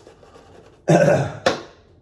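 A man coughing twice in quick succession, from the throat, his throat irritated by a heavily mentholated shaving lather.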